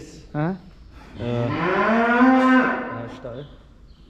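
A dairy calf moos once: one long call of about two seconds that rises in pitch and then holds.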